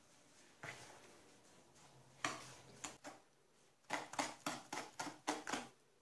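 Metal spoon scraping and knocking against a plastic bowl while stirring tahini and sugar into a thick paste. There are a few scattered strokes, then a quicker run of about six strokes in the second half.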